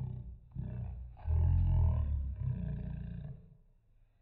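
Electronic siren of a briidea power-return alarm sounding in loud, harsh bursts with short breaks; the longest and loudest burst starts just over a second in and lasts about two seconds.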